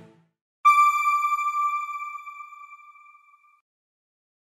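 Background music fading out, then a single bright electronic chime that strikes suddenly and rings down over about three seconds: the sting of a news channel's end card.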